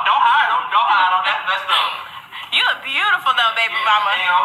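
Speech only: people talking in quick, animated stretches, with a sharp rising exclamation about two and a half seconds in.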